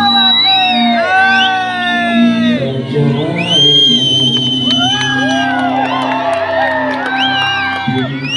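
A man singing into a microphone over music, while a crowd around him whoops and shouts.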